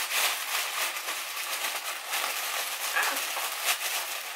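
Plastic shopping bag rustling and crinkling as a hand rummages through it, a steady run of crackles.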